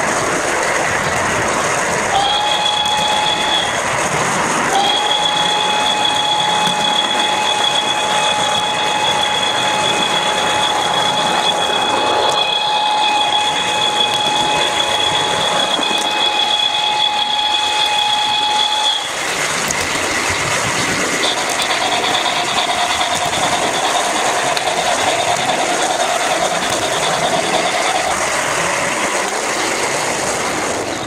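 Rolling noise of an O gauge model train on garden-railway track, heard from on board the train. A high steady tone joins it: briefly about two seconds in, then for about fourteen seconds, and later a fainter, lower one.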